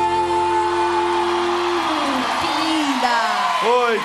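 A man and a woman holding the final note of a duet together over the band, the song ending about two seconds in, followed by whoops and cheering.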